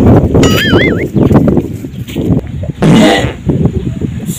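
Loud, irregular low rumbling noise on the microphone. A short warbling tone wavers up and down about half a second in. Near the end comes a man's brief strained grunt.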